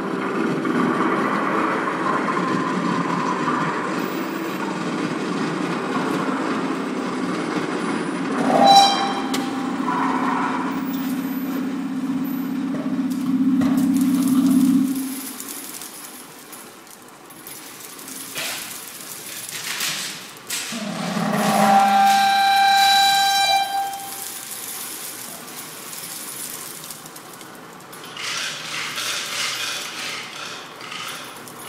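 Improvised experimental ensemble music: a steady low drone that stops about halfway through. Over it, a pitched tone rich in overtones sounds briefly about nine seconds in and returns longer and louder later, with a few scattered knocks in the quieter second half.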